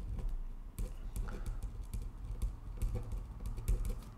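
A pen writing on a sheet of paper, with many short, irregular scratches and taps of the tip as words are written out.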